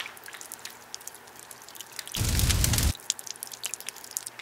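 Foil drink pouch being handled, with scattered sharp crinkling clicks. About two seconds in there is a loud rushing burst of noise, heaviest in the low end, lasting just under a second.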